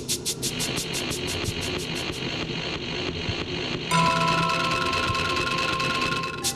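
Electronic music soundtrack: a fast train of high clicking pulses, about six a second, over a steady low hum, stopping about two seconds in. About four seconds in, a chord of steady electronic tones comes in and holds.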